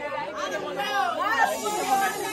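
Several voices talking and calling out over one another: excited group chatter.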